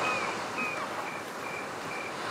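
Night ambience of crickets chirping: a short high chirp repeats about twice a second over a steady background hiss.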